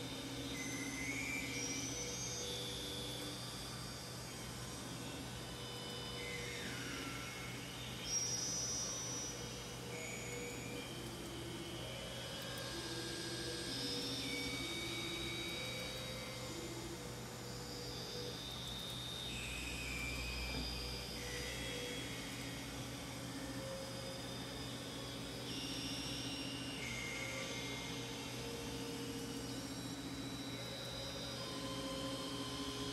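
Synthesizer playing quiet, shifting electronic tones: low held notes stepping from pitch to pitch, with higher chirping tones that glide up and down above them over a steady low hum. A short sharp click about eight seconds in.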